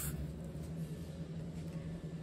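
Quiet room tone with a faint, steady low hum and no distinct sound events.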